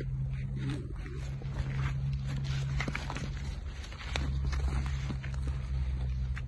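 Rustling of tomato foliage and light crackling of dry straw mulch, many small irregular clicks, over a steady low rumble that grows a little louder about four seconds in.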